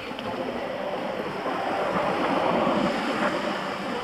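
Rushing wind and road noise from moving along the street, swelling about two seconds in.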